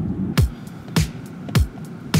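Background electronic music with a steady beat: a deep kick drum hits slightly under twice a second.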